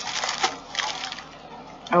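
Crinkling and rustling of a plastic padded shipping mailer being handled and opened, loudest in the first half second and then thinning to a few fainter rustles.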